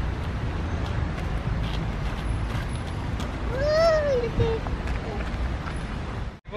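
Outdoor ambience with a steady low rumble and soft footsteps on a gravel path, with one short high voice call that rises and falls about four seconds in.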